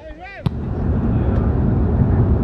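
A brief voice, then an abrupt cut about half a second in to an Audi car travelling at highway speed: a loud, steady rumble of road and wind noise.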